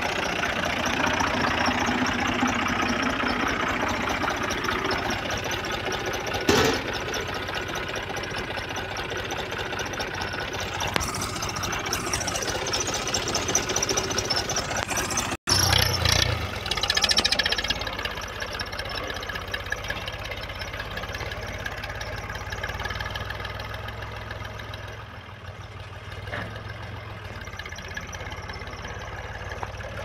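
Fiat 500 Special tractor's diesel engine running steadily, heard close to the engine, with one thump about six seconds in. After a cut, the tractor pulls a seed drill across the field: the engine is louder for a couple of seconds, then settles to a steady run.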